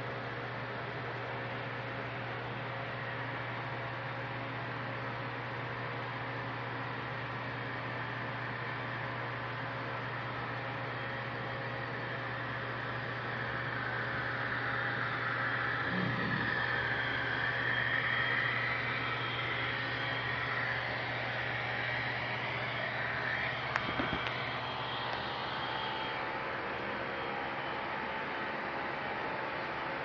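HO scale model train running past, its sound swelling about halfway through as it nears and passes, over a steady hum and hiss; one sharp click near the end.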